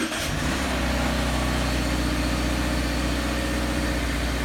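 2017 Subaru Impreza's 2.0-litre flat-four engine settling into a steady idle just after starting. The owner says the car may have a broken PCV valve and lists a rough idle among its symptoms.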